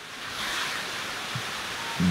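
A steady hiss of noise that swells over the first half second and then holds evenly.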